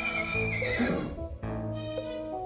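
A horse whinnies once, a falling call about half a second in, over background music with sustained notes.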